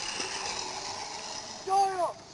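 Steady rushing outdoor noise, then a person's short, loud shout or call near the end.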